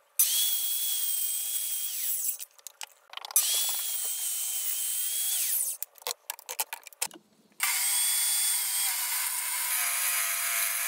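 Corded Bosch circular saw cutting through plywood twice, each run a high whine that winds up, holds steady through the cut and winds down, with short clicks and clatter of handling between. A third saw run starts about three-quarters of the way through and keeps going.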